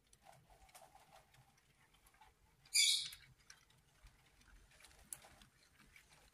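LEGO train handled and pushed by hand along its plastic track: faint small clicks and rattles of plastic, with one brief high squeak about three seconds in.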